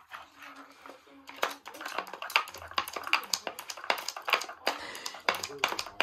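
Plastic dog puzzle feeder clattering as a dog paws and noses its stacked pieces, a quick irregular run of clicks and knocks that starts about a second and a half in.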